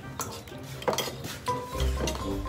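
Spoons clinking against ceramic bowls while eating, a few sharp clinks, over background music whose bass beat comes in near the end.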